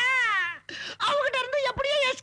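A person's voice letting out a wavering wail that slides down in pitch and breaks off about half a second in, followed by spoken voice.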